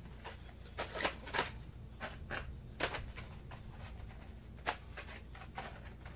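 Quiet, scattered light clicks and rustles of card-backed plastic pencil packs being handled and propped upright one after another, over a faint steady low hum.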